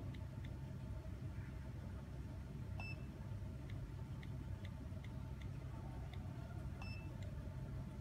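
Faint, irregular ticks of a smartphone's on-screen keyboard clicking as a Wi-Fi password is typed, over a low steady hum. Two short high beeps sound about four seconds apart, at about 3 s and 7 s.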